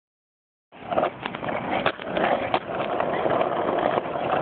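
Skateboard wheels rolling on pavement, starting under a second in, with a few sharp clacks of a board about one, two and two and a half seconds in.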